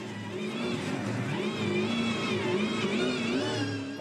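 A Supercars V8 race car engine revving hard during a burnout, its pitch rising and falling as the throttle is worked.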